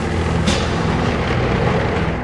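Heavy vehicle engines running in a steady, noisy rumble, with a short burst of hiss about half a second in.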